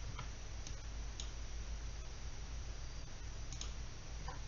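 A few light computer-mouse clicks, spaced irregularly, over a steady low background hum.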